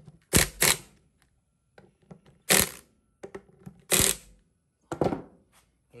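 Sharp metallic clicks and knocks from the reassembled power steering pump of a 2004 Honda Accord and the tools being handled: a quick pair near the start, then single knocks about every second and a half.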